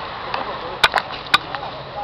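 Three sharp clicks about a second in, the first two close together, over a faint outdoor background with distant voices.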